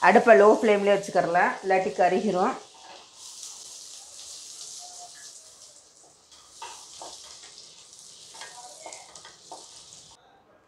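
Butter sizzling as it melts and bubbles in a nonstick kadai. From about six seconds in, a wooden spatula stirs it, with short scrapes and taps against the pan.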